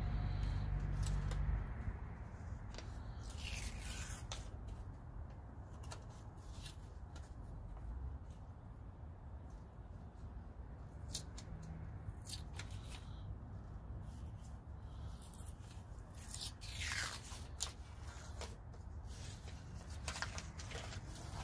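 Protective paper backing being peeled off a quarter-inch acrylic panel: scattered small crinkles and clicks, with two longer rustling rips, one a few seconds in and one near the end. A low rumble dies away in the first two seconds.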